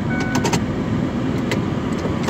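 Van's engine running, heard inside the cabin as a steady low rumble, with a few light clicks.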